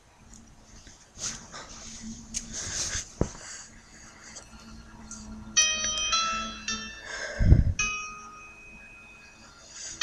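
Karaoke instrumental backing track starting a little past halfway, with a melody of clear ringing single notes. Before it, rustling and handling noise close to the microphone with a sharp click about three seconds in; a heavy low thump comes shortly after the music begins.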